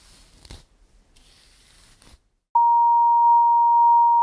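A faint hiss with a single click for about two seconds. Then, about two and a half seconds in, a loud electronic beep starts: one pure pitch, held dead steady.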